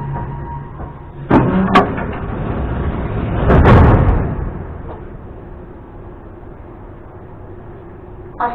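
Metro train standing at the platform: two sharp clunks about a second in, then a loud rush and clatter as the sliding passenger doors open, fading to a steady low hum.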